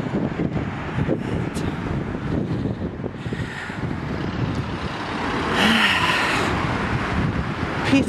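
Road traffic passing on a busy street, with one car going by close and loudest a little past halfway.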